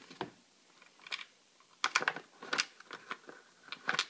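Light plastic clicks and rattles of bulb sockets and wiring being handled against a plastic tail light housing, as a socket is pushed into its slot and twisted to lock. There are several short, irregular clicks, with a quieter gap in the first second.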